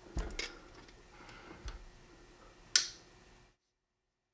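Faint metallic clicks of a Beretta 92X Performance pistol being handled with a trigger pull gauge on its trigger. Near the end comes one sharp click as the double-action trigger breaks and the hammer drops on the unloaded pistol.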